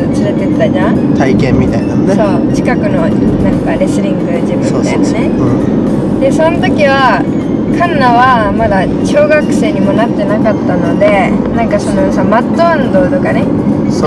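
Conversation inside a moving car, over a steady low hum of road and engine noise in the cabin.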